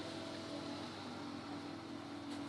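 Faint, steady machine hum with a low, level tone and no distinct events.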